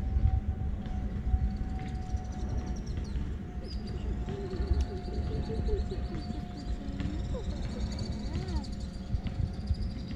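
Outdoor background noise: a steady low rumble with a faint, high, evenly pulsing trill that sets in a few seconds in, and a few soft curving calls.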